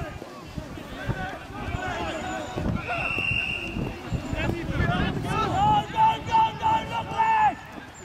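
Rugby players and touchline spectators shouting across the pitch, with one steady blast of a referee's whistle about a second long, about three seconds in. Near the end a long drawn-out shout is held for about two seconds.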